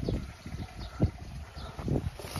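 Footsteps on paving slabs: a few soft knocks about a second apart over a low rumble.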